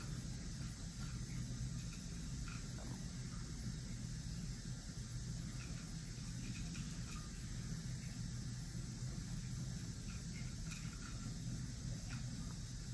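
Quiet room tone: a steady low hum and faint hiss, with a few faint soft clicks.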